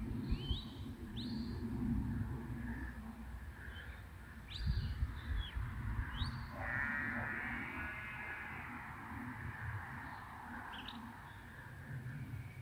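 Short, high bird chirps every second or few over low wind rumble on the microphone, with a longer wavering call lasting about two seconds just past halfway.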